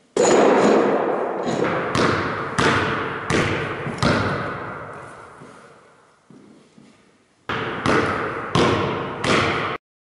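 Basketball bouncing on a wooden gym floor, each bounce ringing on in the big hall. There are several bounces in the first few seconds, then a quick run of dribbles near the end that cuts off abruptly.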